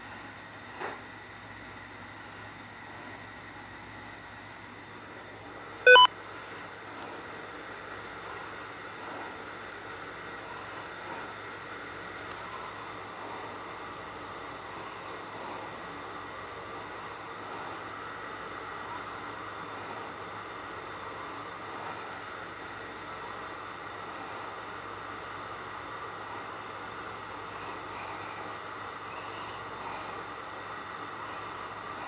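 Spirit box radio sweep: a steady hiss of static runs throughout. A short, loud beep comes about six seconds in.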